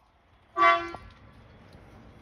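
A single short horn toot about half a second in, steady in pitch and loud against the quiet around it.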